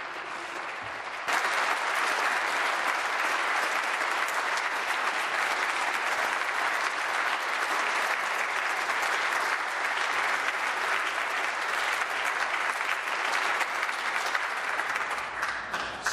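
A standing ovation of many people clapping, swelling suddenly about a second in, holding steady, and thinning out near the end.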